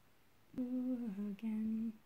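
A woman humming a short three-note phrase that starts about half a second in: a held note, a lower one, then one in between.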